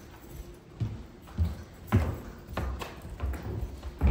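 Footsteps on carpet, several people walking at a steady pace, a soft thud roughly every half second or so.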